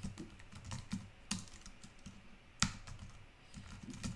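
Computer keyboard being typed on in a quick run of light keystrokes, with one louder stroke a little past halfway.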